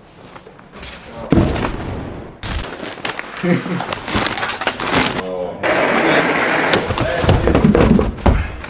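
Clothes and a plastic bag being rummaged through and handled close to the microphone: a run of rustles, crinkles and light knocks.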